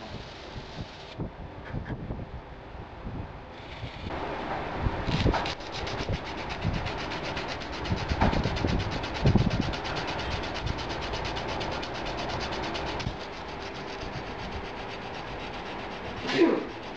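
A power tool runs steadily as the steel edges of a knife's handle are smoothed off. It starts about four seconds in and stops near thirteen seconds, with a few knocks of the work against it; quieter handling noise comes before.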